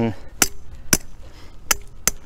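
A 15-16 ounce hammer striking the wire of a metal H-stand yard-sign stake three times, about half a second apart, each a sharp metallic strike with a short ring. The stake is hitting rock underground and is not going in.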